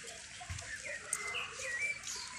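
Birds calling in the open: a few short chirps that swoop up and down in pitch, clustered near the end, with one soft low thump about a quarter of the way in.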